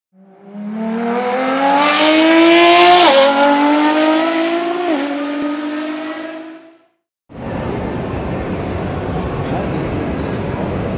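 Car engine revving hard as it accelerates through the gears: its pitch climbs steadily, dropping at two upshifts about three and five seconds in, then fades out. After a brief silence, the steady hubbub of a crowded exhibition hall.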